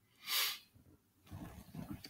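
A speaker's quick breath in, about half a second long, followed by faint low mouth or throat sounds near the end.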